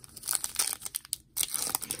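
Foil wrapper of a Donruss Optic football card retail pack being torn open and crinkled by hand: irregular crackling, with a brief pause a little past the middle.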